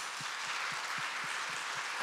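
Audience applauding, a steady, even clapping from many hands.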